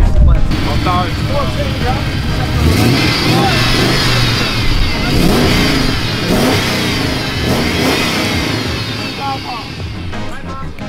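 Modified car engine with silicone boost hoses and intercooler piping, revved by hand from under the open bonnet: several quick rises and falls in engine speed, starting about three seconds in and dying away near the end. A crowd talks around it.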